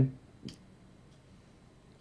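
A pause in conversation: the end of a man's sentence, then a single short click about half a second in, then quiet room tone.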